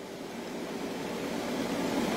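Steady rushing background noise with no distinct strikes, slowly growing louder.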